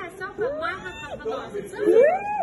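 Indistinct chatter of several people, with two drawn-out voice calls whose pitch rises and then falls, one about half a second in and one near the end.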